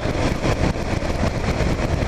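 A Kawasaki KLR 650's single-cylinder engine running as the bike rides at town speed, mixed with steady wind and road noise on the microphone.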